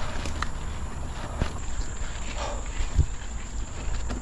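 A mountain bike climbing a steep dirt trail: knobbly Michelin Wild Enduro tyres rolling over the ground under a steady low rumble, with a few sharp knocks from the bike. The rider is breathing hard from the effort.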